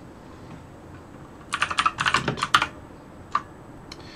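Computer keyboard being typed on: a quick run of keystrokes starting about a second and a half in, then a single keystroke near the end.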